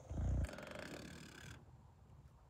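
Brief low rumble, then about a second of soft paper rustling as the flyer is handled.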